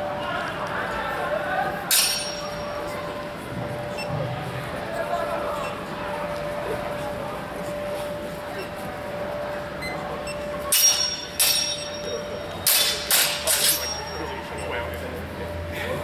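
Steel longswords clashing in a sparring bout: a single sharp clink about two seconds in, then a quick flurry of five or six clashes a few seconds before the end.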